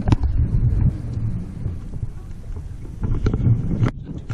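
Wind rumbling and buffeting on the microphone, with a few light knocks.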